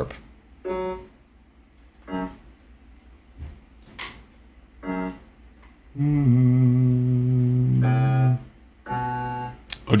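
A man's voice sounding single pitches to check the song's final unison note: a few short notes, then a long steady low note about six seconds in, and a shorter one near the end.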